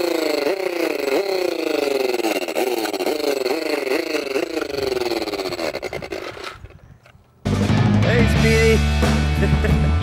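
Electronic motorcycle-engine sound from a child's toy handlebar grip as it is twisted to start the engine: a warbling rev that repeats about twice a second and slowly drops in pitch, fading out about six seconds in. Rock music starts loudly about seven and a half seconds in.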